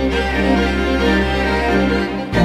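Bowed string ensemble of violins, violas and cellos playing a sustained film-score passage over a held low bass note.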